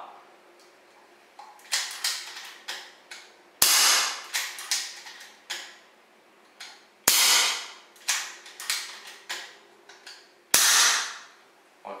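Hatsan AT-P1 5.5 mm PCP air pistol fired three times at even intervals of about three and a half seconds. Each shot is a sharp report that dies away in under a second, and each is followed by a few lighter clicks as the cocking lever is worked for the next shot.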